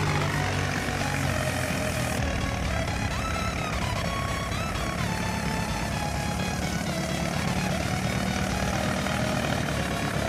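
Tractor diesel engine running steadily as the tractor drives through a paddy field, with music playing over it.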